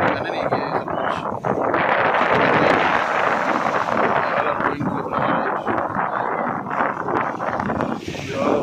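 Wind rushing over the microphone, loudest two to three seconds in, with people talking in the background.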